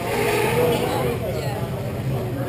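Indistinct voices of players calling out, echoing in an indoor hockey rink over a steady hum of rink noise.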